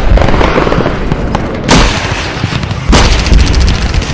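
Battle sound effects: a dense crackle of gunfire with two heavy explosion booms, one a little under two seconds in and a second about three seconds in.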